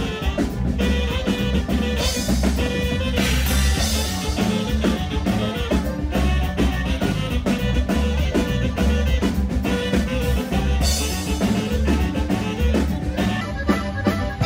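A live norteño-style band with accordion, saxophone, bass and drum kit playing an upbeat dance tune with a steady beat.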